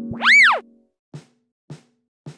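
Intro sound effect: a short whistle-like tone that swoops up and back down in pitch, followed by two soft, evenly spaced ticks.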